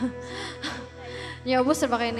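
Live worship-band music: a held instrumental chord sounds softly under a quiet voice. A singer comes in louder about a second and a half in.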